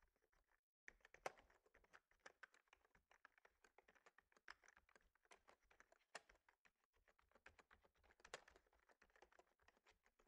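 Faint typing on a computer keyboard: rapid, irregular key clicks as code is entered, with a brief dropout just under a second in.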